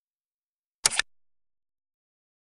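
Click sound effect marking a tap on an on-screen subscribe button: a short, sharp double click about a second in.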